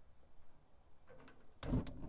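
A few faint clicks and a soft knock near the end as a gas grill's burner control knobs are turned and set.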